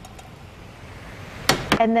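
Soft, low rustling of a spatula stirring dry stuffing in a stainless steel skillet, slowly getting louder, then a single sharp click about a second and a half in, just before a woman starts speaking.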